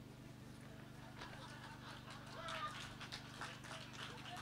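Quiet pause filled by a steady low electrical hum from the sound system, with faint scattered audience sounds: soft laughter and murmur and a few light clicks, starting about a second in.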